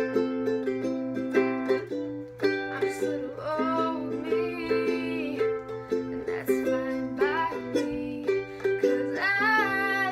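Ukulele strummed in steady chords, with a solo voice singing a few phrases over it.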